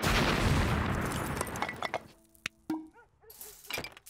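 Cartoon crash of a brick wall being smashed through: a loud crumbling break that fades over about two seconds, followed by scattered clinks and knocks of falling debris.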